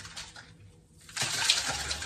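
Lechuza Pon mineral granules pouring and rattling out of a small plastic pot onto a potting mat as a plant's root ball is pulled free, a rushing spill that starts a little over a second in.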